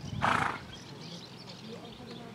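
One short, loud sound from a horse, about half a second long, just after the start.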